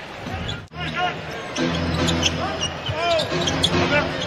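Basketball game sound on a hardwood court: the ball bouncing and sneakers squeaking in short chirps, over steady arena crowd noise. A brief drop a little under a second in where the footage cuts.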